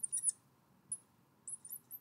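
Fluorescent marker squeaking on a glass lightboard as letters are written: short high squeaks in quick groups, one group right at the start, a single squeak near the middle, and a run of them in the second half.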